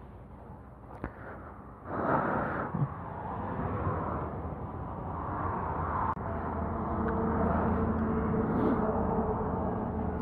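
Road traffic passing on a highway, the noise rising suddenly about two seconds in. A vehicle engine's hum builds through the second half.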